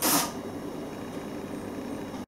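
A brief spray of water from a water pistol hitting a plastic bottle, loudest in the first few tenths of a second, followed by a steady low background hum.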